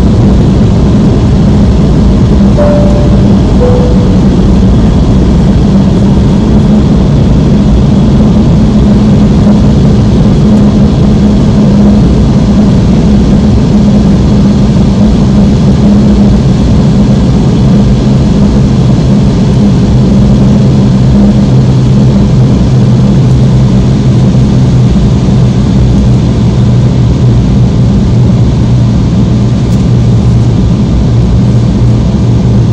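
Cabin noise of an Embraer 170 airliner on its landing approach: the steady, loud rush of airflow and the hum of its GE CF34 turbofans, the hum settling to a deeper tone about halfway through as the engine setting changes. About three seconds in, a two-note falling cabin chime sounds once.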